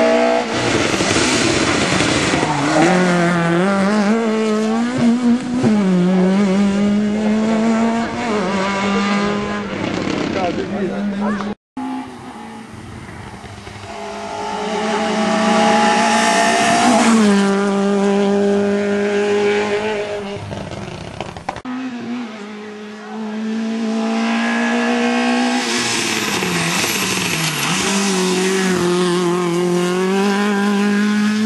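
Small rally cars' engines revving hard through the gears as they drive past at stage speed. The pitch climbs and drops repeatedly. There are three separate passes, split by sudden cuts about twelve and twenty-two seconds in.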